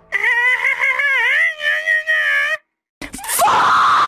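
A high-pitched, drawn-out scream that wavers in pitch and then holds steady, cutting off suddenly about two and a half seconds in. After a short silence, a harsh, noisy burst with a rising pitch fills the last second.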